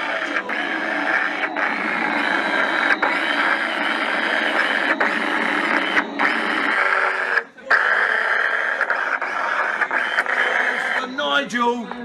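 Harsh noise music played live: a loud, dense, distorted wall of sound with wavering tones that cuts out abruptly several times, with one deeper gap about two thirds of the way through. Talk and laughter come in near the end.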